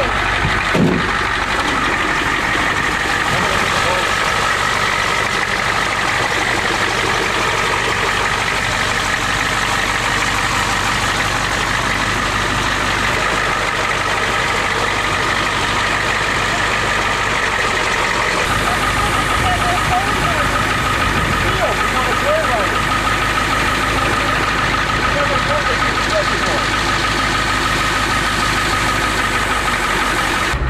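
Ford pickup truck engine idling steadily, cold, just got running again after water was cleared from its fuel. About two-thirds of the way through, a deeper rumble comes in underneath.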